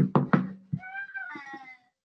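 Three sharp knocks in the first half-second, then a high-pitched, wavering cry lasting about a second.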